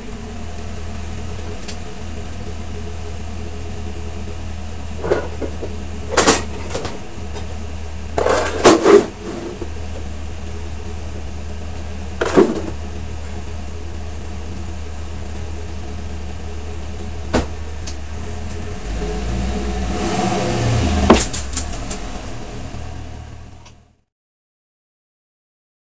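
A 2003 Chevy 2500HD pickup's 6.0-litre V8 idling steadily, with several sharp knocks and clunks over it. The sound fades out at the end.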